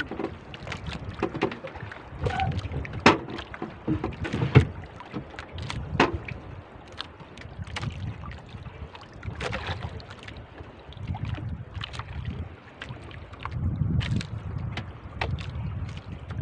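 Wind buffeting the microphone in gusts and water lapping around a small outrigger boat, with scattered sharp knocks and splashes throughout.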